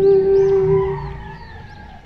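Closing note of a ukulele-and-voice cover: a woman's long held sung note over the ukulele's last chord, fading away about a second in.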